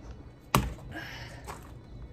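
A ball of wet, clay-rich soil thrown against a cinder block wall, landing with one sharp impact about half a second in and sticking to the block. The mud is very sticky, a sign that the soil holds enough clay for cob.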